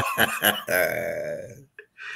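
Men laughing: a few short bursts, then one longer drawn-out laugh that fades away.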